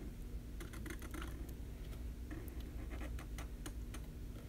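Sharpie fine-point marker tip scratching across legal-pad paper in short drawing strokes. The strokes come in two runs, one from about half a second to a second and a half in and one from a little after two seconds until near the end, over a low steady hum.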